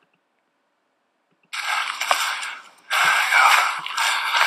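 Silence, then about a second and a half in a replayed phone video's outdoor sound starts: a loud, even rough hiss of open-air noise with faint high steady tones above it. It dips briefly just before the three-second mark.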